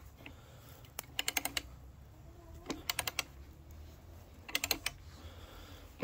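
Three short bursts of rapid clicking as a homemade threaded screw-cone log splitter is turned into the end of a log. The threads are not biting yet and are only pulling wood out.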